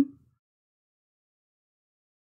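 Near silence: the end of a spoken word fades out at the start, then nothing is heard.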